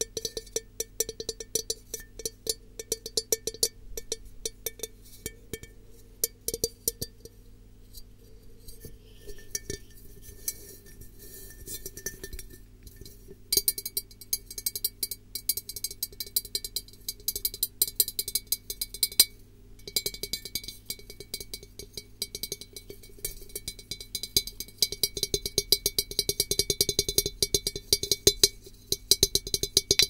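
Rapid fingertip tapping on glass, close to the microphone: a dense stream of sharp clinking taps that pauses briefly twice and grows louder in the second half.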